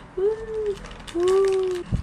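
Plastic courier mailer bag being torn open by hand and teeth: a run of crackly ripping. Twice a closed-mouth hum of effort is heard, the louder one in the second half, and a short low thump comes just before the end.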